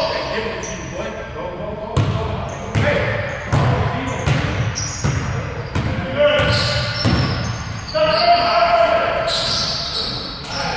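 Basketball bouncing on a hardwood gym floor, dribbled at about one bounce every 0.7 s, echoing in a large hall, with players' voices calling out over it.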